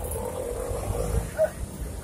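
Low rumble of street traffic passing close by, with a faint steady engine tone and a short higher sound about one and a half seconds in.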